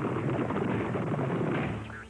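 Cartoon sound effect of a frantic scramble: a dense, rattling clatter of rapid thumps that starts suddenly and lasts almost two seconds, as the characters dash for cover.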